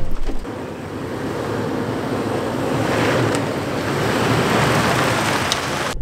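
A Toyota 4Runner driving slowly down a rough dirt trail: a steady rush of tyre and wind noise that grows louder through the middle, with a couple of faint ticks from stones.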